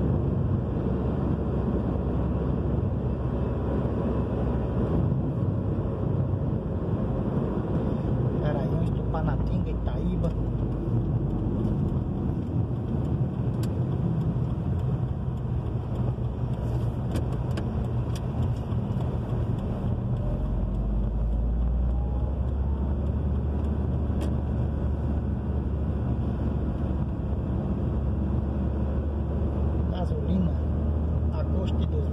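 Steady road and engine noise inside the cabin of a moving car. The low rumble gets somewhat heavier about two-thirds of the way through.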